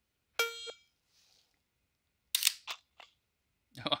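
Short electronic start beep from the dry-fire training app on the phone, about half a second in. About two seconds later comes a quick run of three or four sharp clicks.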